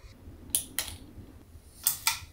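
Short, sharp clicks of a ceiling fan's pull-chain switch: two quick ones about half a second in and a louder one near the end, as the fan is stepped down to a lower speed setting.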